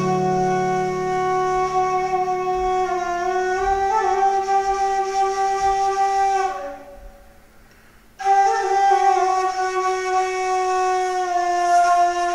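A kaval (Turkish end-blown flute) playing a slow, unaccompanied melody in long held notes that slide gently from one to the next. It breaks off for about a second and a half a little past halfway, then takes up the line again.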